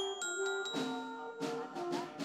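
Glockenspiel's metal bars struck with mallets, about four single notes at different pitches played slowly one after another, each ringing on clearly.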